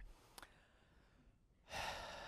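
A man's breath into a microphone near the end, a short rush of air, after a quiet pause with one faint click.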